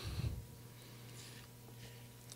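Quiet room tone with a faint steady hum, after the tail end of a man's drawn-out "um" in the first half second.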